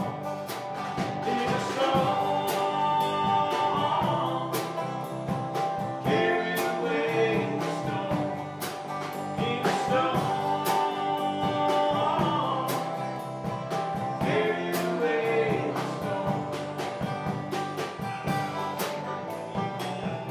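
A live acoustic country-style band playing: banjo and acoustic guitars strummed and picked over a steady drum-kit beat, with a voice singing.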